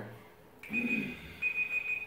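Electronic timer alarm beeping: a steady high-pitched tone that starts about two-thirds of a second in and repeats in long pulses, signalling that the turn's time is up.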